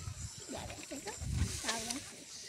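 Short, broken snatches of a voice with no clear words, rising and falling in pitch, over a low rumble.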